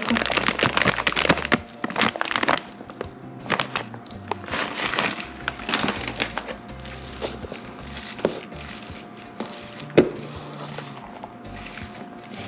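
A plastic bag crinkling and rustling as shredded cheese is shaken out of it into a bowl, dense in the first two seconds or so. Softer scattered rustles and clicks follow as the cheese is worked into grated squash by hand, with a sharp click about ten seconds in. Background music plays throughout.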